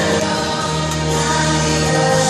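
Children's choir singing an action song together over instrumental backing music with a steady bass line.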